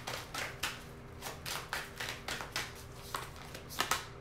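Tarot cards being shuffled by hand: a quick, even run of soft card slaps and flicks, about four or five a second.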